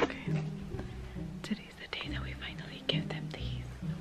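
Soft whispering over quiet background music, with a couple of faint clicks.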